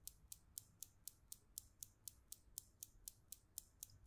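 Faint, even ticking, about four to five ticks a second, over a low hum.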